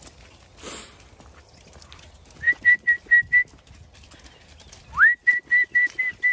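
Whistled commands to the sheepdogs: a string of five short, high pips at one pitch, then near the end a quick rising note followed by another run of pips.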